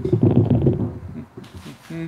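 A man's voice making wordless low sounds: a long, loud low sound through the first second, then a short steady hum near the end.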